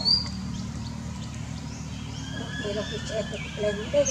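Macaques calling: thin high squeaks that slide in pitch, with lower chattering calls in the second half, over a steady low rumble.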